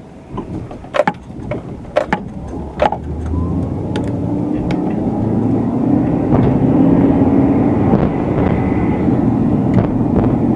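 A car accelerating away after a turn, heard from inside the cabin: engine and road noise swell steadily as the engine note climbs. Three sharp clicks about a second apart come in the first three seconds.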